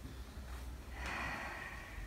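A single audible breath from a person, a soft nasal exhale or sniff about a second in, lasting under a second, over faint low room hum.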